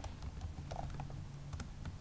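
Computer keyboard keys tapped in a quick, irregular run of soft clicks as a line of code is typed.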